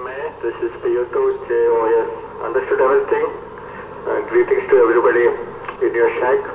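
A voice talking over a ham radio transceiver, thin and squeezed into a narrow band as radio speech is.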